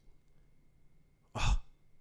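A man's single short breath out, a sigh, into a close microphone about one and a half seconds in, over quiet room tone with a faint steady high tone.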